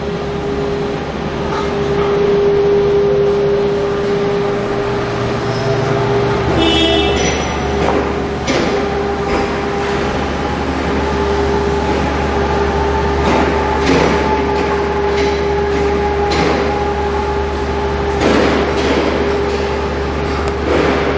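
Accutek stainless steel 48-inch disc accumulation table running on its 1/10 hp variable-speed motor drive: a steady whine with a low hum that grows louder about six seconds in as the speed is varied. Occasional knocks come from the plastic bottles on the turning disc bumping each other and the guide rails.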